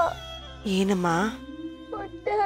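A girl crying, with one wailing sob under a second long near the middle, over background music with held notes.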